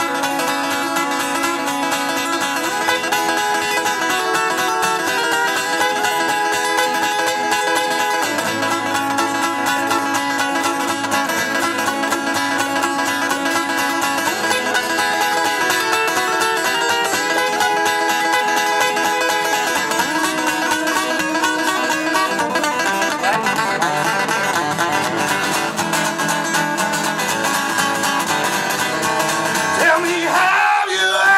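Solo acoustic guitar playing an instrumental passage of rapid plucked notes, with no singing.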